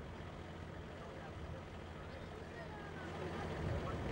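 Faint outdoor ambience: a low, steady rumble with distant voices, a little louder near the end.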